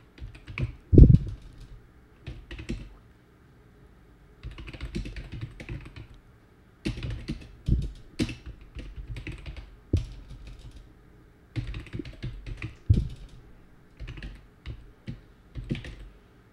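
Typing on a computer keyboard in several bursts of rapid key clicks with short pauses between them. A single loud thump comes about a second in.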